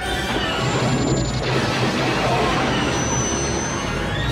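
Movie soundtrack played over hall loudspeakers: orchestral score mixed with dense crashing and rumbling space-battle sound effects.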